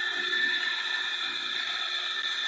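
Electric espresso grinder motor running steadily, grinding coffee beans, a steady whir with a high whine.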